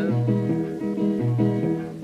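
Acoustic guitar playing a short instrumental break between sung verses, alternating a low bass note about twice a second with strummed chords, on an old 1928–1937 recording.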